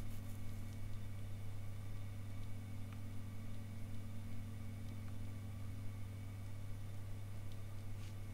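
A steady low hum, with a few faint clicks scattered through it.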